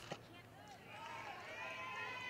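Faint, distant voices at a softball field: several overlapping high-pitched calls and shouts, a little stronger from about a second in.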